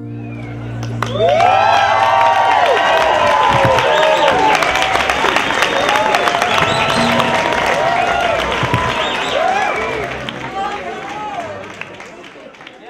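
The last chord of the acoustic-guitar song rings out briefly, then the audience breaks into cheering, whooping and clapping about a second in. The cheering fades away near the end.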